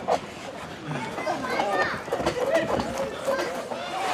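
Several people's voices in the background, talking and calling out over one another, without any one clear speaker.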